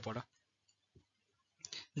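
Near silence after a brief word of speech, broken by one faint click about a second in.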